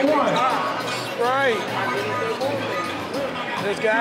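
Basketball game on a court: a ball bouncing as it is dribbled, amid shouting voices of players and spectators.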